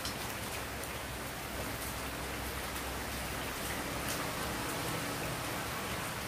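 Soft, faint crackles and rustles of a ripe jackfruit being torn apart by hand on newspaper, over a steady, rain-like hiss.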